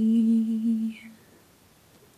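A voice humming one held low note with closed lips, steady in pitch, which stops about a second in.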